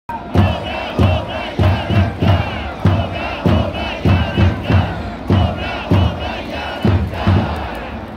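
A stadium crowd of baseball fans singing a player's cheer song (ouenka) in unison. A heavy low beat marks the rhythm about every 0.6 seconds throughout.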